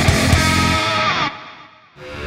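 Background music with a steady beat that cuts away about a second in on a falling sweep, then fades almost to nothing.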